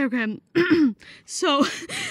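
Only speech: voices talking in short phrases.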